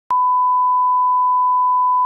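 Television test tone: a steady 1 kHz sine reference tone of the kind broadcast with a test card and colour bars. It starts abruptly with a click just after the start and holds one unchanging pitch.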